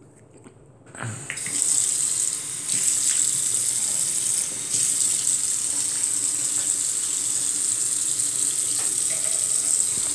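Bathroom sink faucet turned on about a second in, then water running steadily into the basin.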